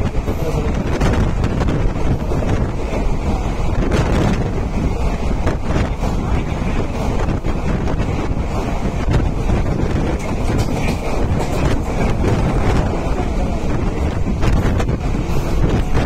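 Wind buffeting the microphone at the open window of a moving electric suburban (EMU) train, over the train's steady running noise on the rails. The noise is loud and continuous, with no break.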